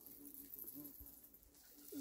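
Near silence, with a few faint short low notes in the background.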